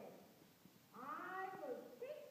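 A child's voice: the end of one utterance trails off at the start, then one drawn-out call about a second in rises and falls in pitch.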